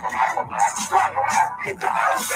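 Hip-hop track playing, with a run of short, bark-like vocal shouts over the beat, about three a second.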